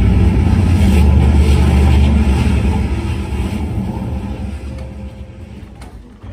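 Loud rumbling stage sound effect for the genie's magical entrance, starting suddenly and slowly fading away.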